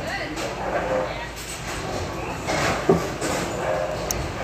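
Bowling-alley ambience: background voices over a steady hum of the hall, with a single sharp knock about three seconds in.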